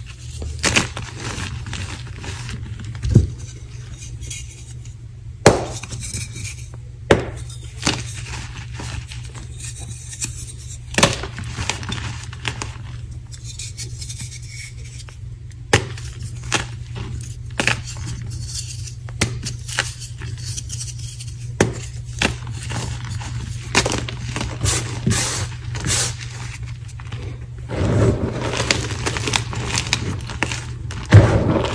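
Blocks of gym chalk being crushed in bare hands, with sharp cracks and snaps at irregular intervals as pieces break apart. Near the end comes denser crumbling as chunks and powder fall back onto the pile. A steady low hum runs underneath.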